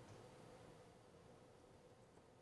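Near silence: faint studio room tone with a weak steady hum.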